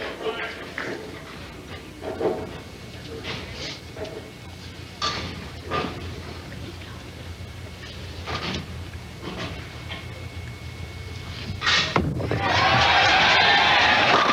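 Bowling ball rolling down the lane with a steady low rumble, then crashing into the pins about two seconds before the end for a strike, and the crowd breaking into loud cheering and applause. Before that, scattered knocks and murmur of the bowling centre and audience.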